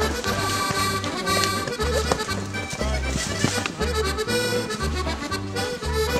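Instrumental background music with a steady, bouncing bass line of about two notes a second under a sustained melody.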